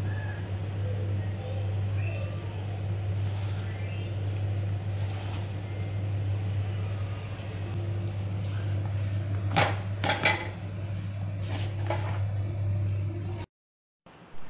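Hands pressing and working a soft shrimp-and-tapioca dough in a plastic bowl, over a steady low hum, with a few short knocks of the bowl or hands about ten seconds in.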